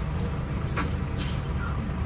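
Steady low engine rumble of a tour coach heard from inside, with a couple of short high hisses about a second in.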